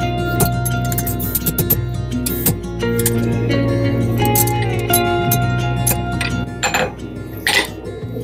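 Background guitar music over repeated hammer blows driving a small hand punch through a red-hot metal strip on an anvil, punching holes.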